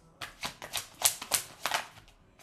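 Tarot cards being handled in the hands, a quick irregular run of about ten sharp clicks and snaps as the deck is shuffled and a card is drawn.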